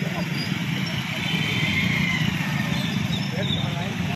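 Crowd murmur: many people talking at once over a steady low rumble, with no single voice standing out.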